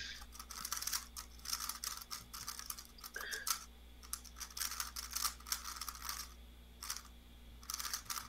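Faint, quick clicking and rattling of a speedcube's layers being turned by hand, in irregular bursts.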